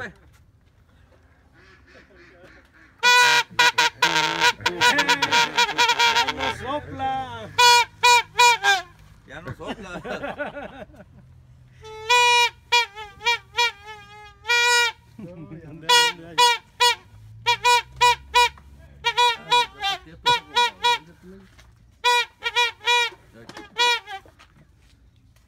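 Plastic party horn blown in honking toots at a single steady pitch. It starts about three seconds in with a long run of rapid, buzzy pulses, then comes in groups of short honks with brief gaps between them until the end.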